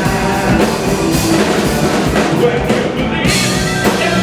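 Blues band playing live through a PA: drum kit, electric guitar and a singer, with a harmonica player blowing into a cupped microphone.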